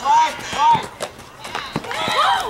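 Young ballplayers' voices: two high shouted calls in the first second, then a couple of sharp knocks later on.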